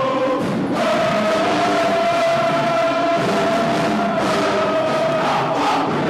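A group of marching band members singing or chanting together in unison, holding one long steady note for most of the time, with the pitch moving near the end.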